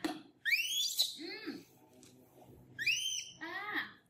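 Baby monkey giving two high-pitched, whistle-like squealing calls, each rising then falling over about a second, one near the start and one about three seconds in.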